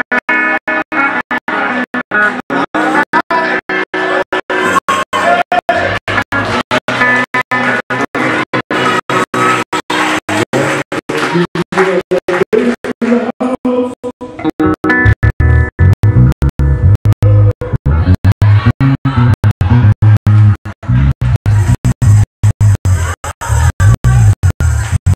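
Live church band music with guitar and organ, held chords at first, and a heavy bass line coming in about fifteen seconds in. The recording is broken up by frequent brief dropouts.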